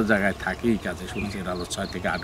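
A man talking in Bengali at an ordinary conversational level, a little quieter than the speech just before.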